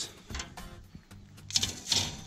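Faint clicks and rustles of a wire grill rack and aluminium foil being handled, with a short hiss near the end.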